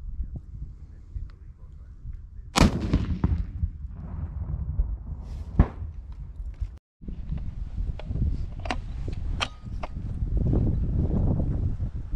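Two sharp shots about three seconds apart from a shoulder-fired launcher firing 7.62 mm subcaliber training rounds; the first rings off with a short echo. A few light metallic clicks follow, with wind rumbling on the microphone.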